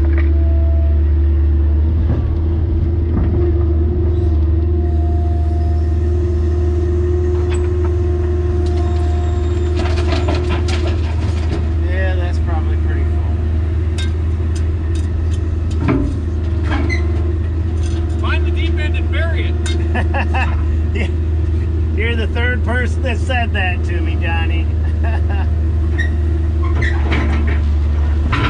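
Diesel engine of a mid-size Kobelco excavator running steadily under load, heard from inside the cab, with a steady hydraulic whine over it. Rock and debris drop from the bucket into the steel dump-truck bed with a single loud clang about halfway through.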